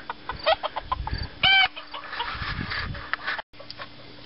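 Rooster clucking: a string of short clucks, with one louder, brief call about a second and a half in.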